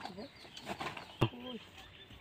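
Faint voices in the distance, with a single sharp click a little over a second in.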